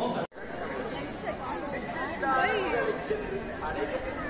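Several people talking at once in the background, with no clear words. A higher voice stands out about halfway through. The sound cuts out completely for a moment just after the start, where two recordings are joined.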